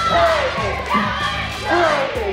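A cheerleading squad yelling a cheer together in unison, over background music.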